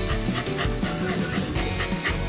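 A young corgi giving a few short, high yips and barks over background music.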